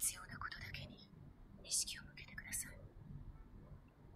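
Quiet, whisper-like dialogue in two short phrases about a second apart, mostly hiss with little voiced tone.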